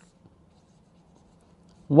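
Faint scratching of a ballpoint pen writing on paper, with a light tick as the pen meets the page at the start.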